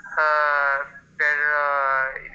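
A person's voice making two drawn-out, steady-pitched 'ehhh' sounds, each under a second long, with a short gap between.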